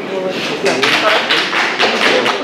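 Audience applauding, the clapping starting a moment in.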